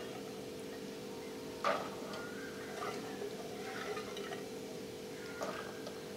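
Faint handling of soaked mung beans in a casserole, with a short knock about a second and a half in and a smaller one near the end, over a steady low hum.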